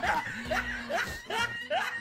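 A person laughing in a series of short snickers, each one rising in pitch, several in quick succession.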